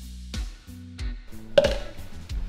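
Background music with a steady drum beat and bass. A sharp click about a second and a half in is the loudest sound.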